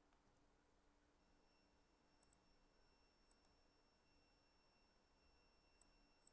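Near silence: faint steady high-pitched electronic whine with a few faint clicks, typical of a screen recording's room tone with the odd keyboard or mouse click.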